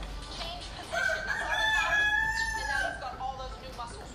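A rooster crowing once: a single long call of about two seconds, starting about a second in.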